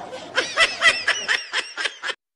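Laughter added after a joke's punchline: a quick run of short 'ha' bursts, about four a second, starting about half a second in.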